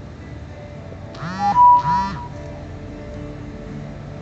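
Harmonica played through a PA over an acoustic guitar: two short, loud bent notes about a second and a half in, with the guitar carrying on underneath.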